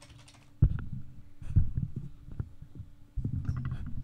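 Typing on a computer keyboard, heard as dull low thumps carried through the desk into the microphone, the strongest about half a second and a second and a half in. A longer low rumble follows near the end, over a faint steady hum.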